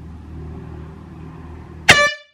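A low steady hum, then near the end a sudden, very loud horn blast that cuts off abruptly after a fraction of a second.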